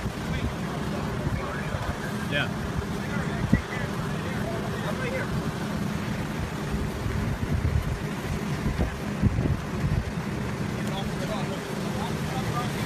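Steady low rumble of engines and wind at a house fire, with faint voices of the crew and a sharp knock about three and a half seconds in.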